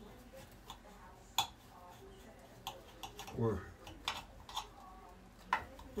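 A knife tapping and clicking against a glass baking dish while cutting a slice of pie: several sharp, separate taps, the loudest about a second and a half in.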